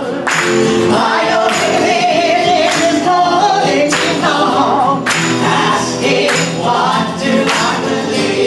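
A live song: singing with acoustic guitar over a strong, regular beat that hits about every second and a quarter.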